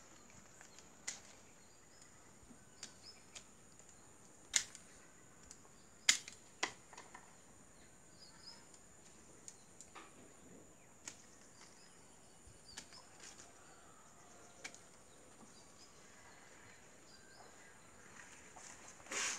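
Scissors snipping and clicking through the thin branches of a gardenia bonsai as it is pruned, sharp single clicks scattered a second or more apart, the loudest two about four and a half and six seconds in. Faint bird chirps and a steady high hiss sit behind.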